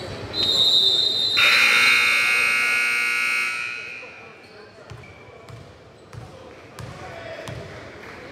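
A referee's whistle blast, then the gym's scoreboard buzzer sounding harshly for about two seconds. After it, a basketball bounces a few times on the hardwood amid chatter.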